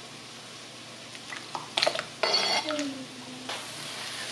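Chopped kielbasa pieces pushed off a plastic cutting board into broth in a ceramic slow-cooker crock: a few faint clicks, then a short scraping, splashing burst about two seconds in.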